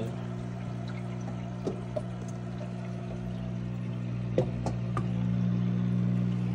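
Aquarium filter running: water pouring from its outflow into the tank over a steady pump hum, with a few small clicks and splashes.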